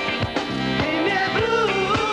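Blues-style band music with saxophones, electric guitar and piano. About a second in, a voice-like melody starts sliding up and down in pitch over the band.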